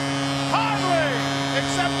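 Arena goal horn sounding a steady, low chord of several tones, signalling a home-team goal, with a commentator's voice over it from about half a second in.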